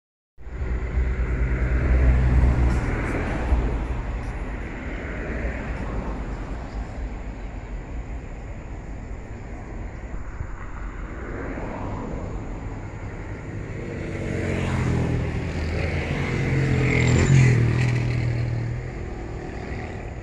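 Motor vehicle engines going by: loudest in the first few seconds, fading, then swelling again to a second peak near the end as another vehicle passes.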